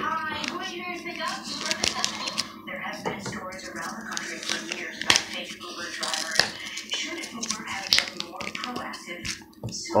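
Packing tape being picked at and torn off a mailed package, with irregular crackles, clicks and snaps of tape and packaging being handled.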